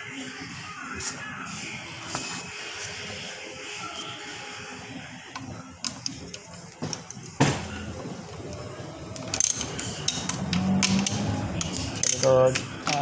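Hand nut driver loosening the 8 mm nuts on the rear cover of a Denso alternator. Scattered metal clicks and rattles come in the second half.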